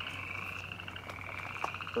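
A chorus of frogs calling steadily: a continuous high, fast-pulsing trill, with a faint low steady hum underneath.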